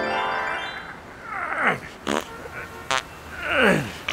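A rising keyboard glissando, a flashback transition cue, fades out in the first second. Then come two quick squeaky glides falling from high to low pitch, the second louder, with a click and a short rapid rattle between them.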